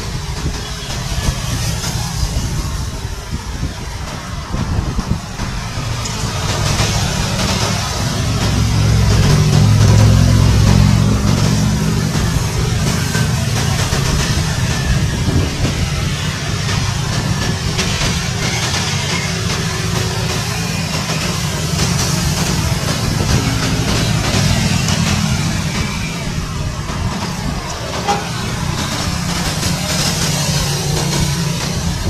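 A formation of military utility helicopters flying overhead: a steady, rapid beat of rotor blades and turbine noise. It swells louder about a third of the way in, then holds steady.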